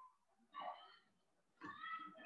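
Two faint, high-pitched drawn-out calls in the background: a short one about half a second in and a longer, steadier one starting near the end.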